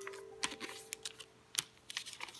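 Origami paper being handled and creased by hand: a few scattered sharp clicks and crinkles of the stiff paper under the fingers.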